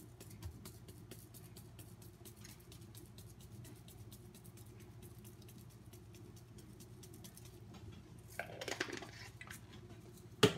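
Crushed red pepper flakes shaken out of a container onto noodles in a frying pan: a dense run of quick, light ticks and patter that stops about eight seconds in. A brief louder noise follows near the end.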